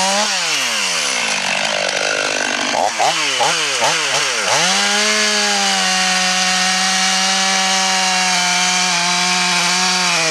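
Stihl MS 500i fuel-injected two-stroke chainsaw, revved up and down in short bursts through the first half. From about halfway it is held at a steady high pitch as it cuts into the base of a large beech trunk.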